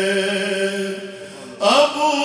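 A man reciting a naat, a devotional poem in praise of the Prophet, in a chanted melody. He holds one long note that fades away about halfway through, then starts a new phrase with a breath and a rising pitch near the end.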